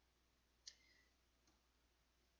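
Near silence, broken by one short, faint click a little over half a second in and a fainter tick about a second later, as the on-screen ruler tool is used to draw a bar.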